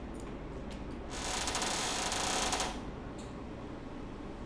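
A rapid run of fine mechanical clicks, a dense rattle that starts about a second in and lasts about a second and a half, over a steady low room hum.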